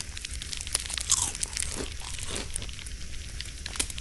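Crackling of a small fire: many sharp, irregular pops over a low steady hiss.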